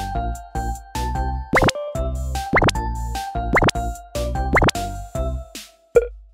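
Bouncy children's background music over a bass line, with four quick rising pitch sweeps, a cartoon bloop effect, about a second apart. The music dies away just before the end, where a short sharp pop sounds.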